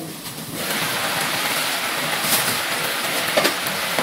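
Thick sweet-and-sour sauce boiling hard in a pan, a steady bubbling that comes in about half a second in; the sauce is being reduced until it thickens.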